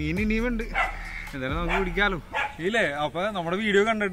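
A man speaking animatedly, in a lively, sing-song voice.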